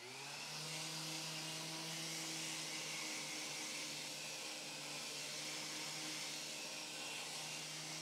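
Random orbital sander running steadily on a wooden frame during a final sanding with 150-grit paper, with a dust-extraction hose drawing on it. It makes an even hum with a hiss over it.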